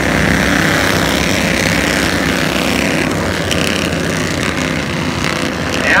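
A pack of Bandolero race cars running at racing speed on the oval, their small engines blending into one steady, loud drone.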